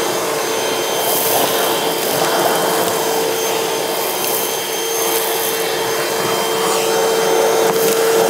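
Milwaukee M18 FUEL 2-gallon cordless wet/dry vac (0880-20) running steadily with a constant motor whine over the rush of air, its floor nozzle sucking sawdust off a wooden board.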